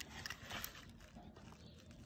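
Faint, sparse clicks and taps from a hand handling small die-cast toy cars, with a quiet background.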